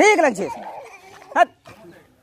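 A toddler's high, wavering cry lasting about half a second, then a short second yelp about a second and a half in.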